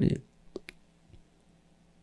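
Two faint, short clicks in quick succession about half a second in, after the last syllable of a man's speech, then near-silent room tone.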